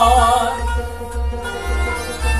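Kashmiri devotional song: a man's voice holding a wavering note that fades out about half a second in, over instrumental accompaniment with a steady low drum beat.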